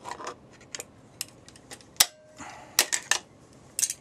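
Sharp metallic clicks and clacks, about half a dozen spread over a few seconds, as Vise-Grip sheet-metal pliers are clamped onto an LED par can's bent metal mounting bracket to bend it straight. The loudest click comes about halfway through and is followed by a short faint ring.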